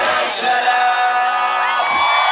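Pop-punk band playing live rock music with the crowd shouting; the drums and bass drop out about half a second in, leaving a held chord ringing, with a gliding tone near the end.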